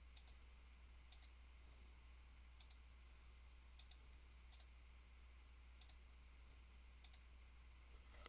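Faint computer mouse clicks, about seven of them at irregular intervals, each a quick press-and-release pair, as keys are entered one at a time on an on-screen calculator. A faint steady low hum runs underneath.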